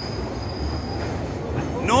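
London Underground train noise in the station: a steady rumble, with a thin high whine that stops just after the start.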